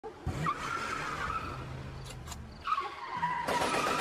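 Tires screeching in two long squeals, the second starting about two-thirds through and sliding down in pitch, with two faint clicks between them and a hiss building near the end.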